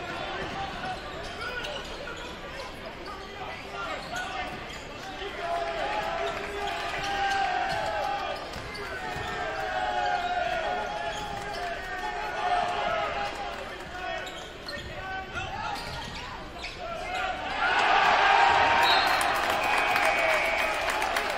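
A basketball game in play in a gymnasium: the ball dribbling on the hardwood court under a constant din of player and spectator voices. The crowd noise swells loudly near the end.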